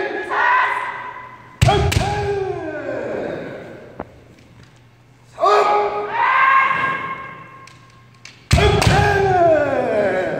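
Kendo kiai shouts with two strikes: a long held shout, then a sudden crack of a bamboo shinai strike and foot stamp on the gym floor with a shout that falls away, about one and a half seconds in. The same pattern repeats: a shout about five seconds in, then a second strike and falling shout about eight and a half seconds in.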